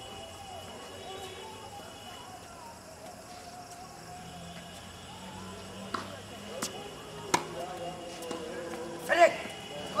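Tennis ball struck by rackets and bouncing on a hard court during a doubles rally: three sharp pops past the middle, a little under a second apart. Murmured voices run underneath, and a man shouts near the end.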